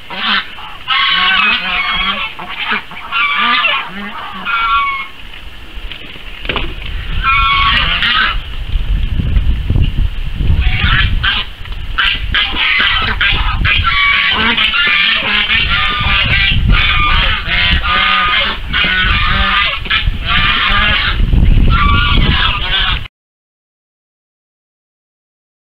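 A flock of white domestic geese honking loudly, the calls coming in short repeated runs with brief gaps and growing denser in the second half. A low rumble sits beneath the honking from about eight seconds in, and all sound cuts off abruptly near the end.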